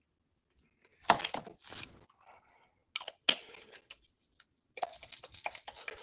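X-Acto craft knife cutting into the plastic lid of an unopened paint bottle: short crunching, scraping cuts about a second in and again near three seconds. Near the end comes a quick run of small clicks and rattles as the bottle is handled.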